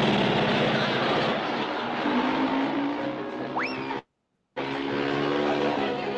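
Cartoon soundtrack of a small motorbike's engine sputtering along over background music, with a quick rising whistle about three and a half seconds in. Just after four seconds the sound cuts out completely for about half a second, then the music resumes.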